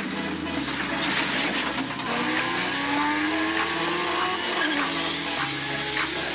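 A vehicle engine revving, its pitch climbing in several rising sweeps, over background music with a steady bass line.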